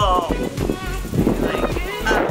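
Background music under excited, wordless vocal reactions from women, high gliding exclamations near the start and again near the end.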